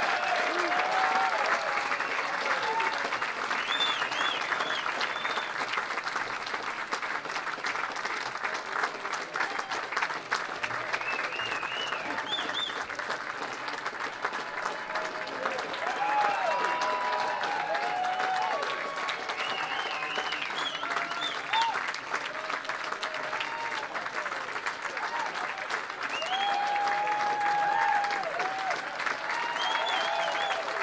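Concert audience applauding steadily, with scattered cheers and whoops from the crowd.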